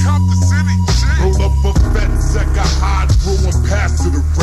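Chopped-and-screwed hip hop track: slowed, pitched-down rap vocals over deep, sustained bass notes.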